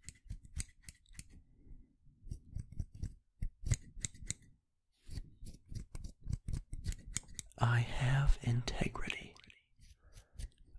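Scissors snipping close up, the blades closing in irregular runs of quick cuts, with a short pause about halfway through.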